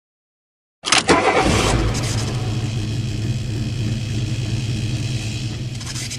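Car engine starting with a sudden burst about a second in, then running at a steady idle.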